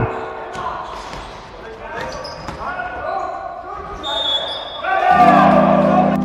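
Live sound of an indoor basketball game in a large, echoing sports hall: indistinct calls from players and a ball bouncing on the wooden court, with a short high squeak about four seconds in. Background music comes back in a little after five seconds.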